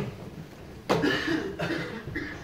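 A person coughing in a small room: a sharp cough about halfway through, then a second, shorter one near the end.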